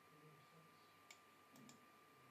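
Faint computer mouse clicks: a single click about a second in, then a quick pair, over near-silent room tone with a faint steady high-pitched whine.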